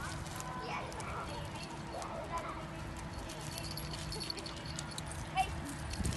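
Small dogs moving about on wood-chip mulch, their footsteps making scattered light scuffs and clicks, with faint human voices in the background.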